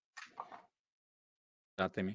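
Mostly dead silence on a video call's audio, with a brief faint voice fragment just after the start and a man starting to speak just before the end.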